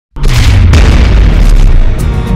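Cinematic boom sound effect for a channel logo intro: a sudden, very loud deep impact just after the start, a second sharp hit just under a second in, and a heavy low rumble held under both.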